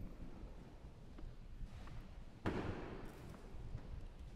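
Quiet room tone of a large church with a low rumble throughout and no organ playing, broken about two and a half seconds in by one short, sudden noise.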